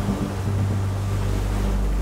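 Heavy breaking surf and wind buffeting the microphone, under the low steady drone of a motor lifeboat's engines as the boat drives through the waves.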